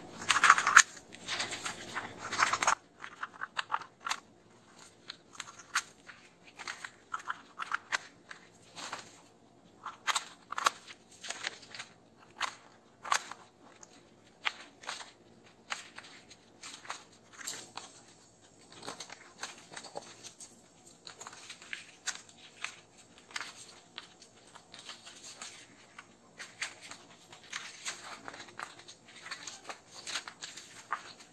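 Scissors cutting through chart paper: a dense run of snips in the first few seconds, then quieter, irregular snips and paper crackling as the sheet is handled.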